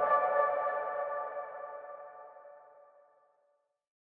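Closing music sting for the logo: a bright chime chord of several pitches that rings out and fades away over about three seconds.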